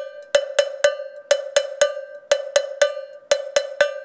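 Handheld cowbell struck with a stick in a steady repeating rhythm, about four strokes a second, some strokes brighter than others. Each stroke rings on the bell's single pitch, which carries on between strokes.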